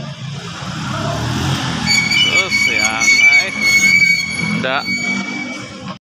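A motorcycle engine running close by, with voices over it and a steady high-pitched whine from about two seconds in.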